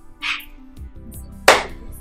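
Background film music, with a short excited squeal from a woman early on, then one sharp, loud hand clap about a second and a half in.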